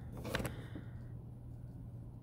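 Light handling sounds of a clear plastic drafting triangle being moved over paper on a desk: a short rustle with a faint click in the first half-second, then only a low steady hum.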